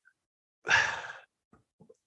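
A person's audible breath into a close microphone, a sigh-like rush of air about half a second long that fades away, followed by a few faint mouth clicks.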